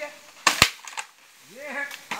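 Dry bamboo snapping: two sharp, loud cracks in quick succession about half a second in, then a fainter crack.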